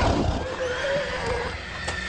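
Horse neighing: one long wavering call, with a deep thud as it begins.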